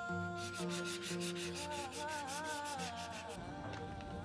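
Quick, even rubbing strokes, about six a second, stopping a little over three seconds in: a rag rubbing over steel truss pipe. Background music with a singing voice plays under it.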